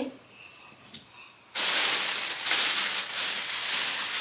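Shopping bag and wrapping rustling as a garment is pulled out. The rustling starts suddenly about one and a half seconds in and keeps going loudly.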